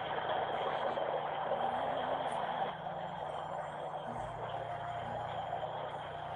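Steady background hiss with a faint low hum, thin in tone like a phone-quality voice recording.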